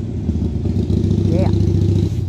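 Motorcycle engine running, a loud, steady low drone.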